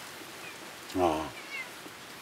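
A man's short drawn-out "mmm" of appreciation while tasting, about a second in.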